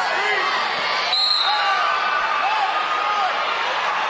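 Arena crowd of spectators calling and shouting over one another, with a brief high-pitched tone about a second in.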